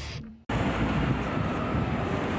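A short fading sound at the start, then a sudden cut about half a second in to steady, loud road-traffic noise with a deep rumble.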